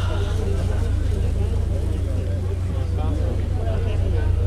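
Many passengers chattering in the background over a steady low rumble aboard a sightseeing cruise ship.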